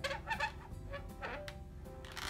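A black permanent marker squeaking in short chirps against the latex of an inflated twisting balloon as small strokes are drawn.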